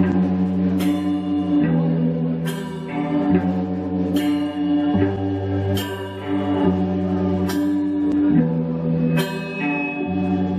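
Live rock band playing: electric bass, guitar, keyboard and drum kit. Held chords change about every one and a half to two seconds, each marked by a sharp drum-kit hit.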